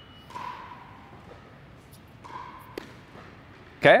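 Tennis shoes squeaking briefly a couple of times on an indoor hard court as a player moves for an overhead, and a single sharp tennis-ball impact a little before three seconds in.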